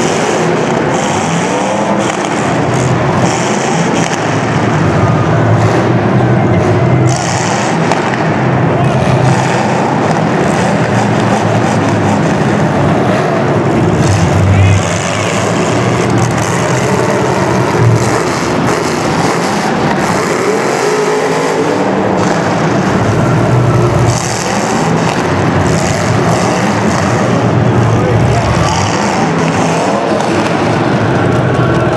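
Demolition derby cars' engines running loudly and continuously across the arena floor.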